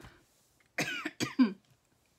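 A woman coughing: a short double cough about a second in.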